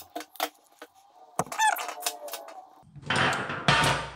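Hand crimping tool squeezed onto a crimp-on ring terminal for a ground wire: small clicks, then a short wavering squeak from the tool about halfway through. Near the end comes a louder burst of handling noise as the tool is put down on the bench.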